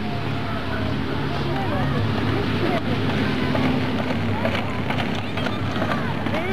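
Faint voices of children and adults talking in the background over a steady low hum.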